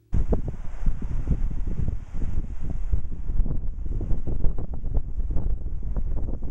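Strong wind buffeting the camera microphone, a loud, gusty low rumble that starts abruptly right at the beginning and keeps surging.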